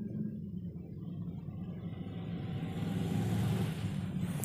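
Low steady background rumble, with a rushing noise that swells over the last two seconds and fades near the end, in the manner of a vehicle passing outside.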